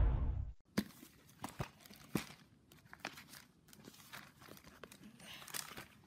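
Background music fades out, then quiet handling sounds: irregular soft paper rustles and light taps around an open paperback book, with a few sharper ticks.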